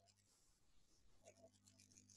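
Near silence: faint room tone with a low electrical hum and a few faint computer-keyboard clicks about a second in.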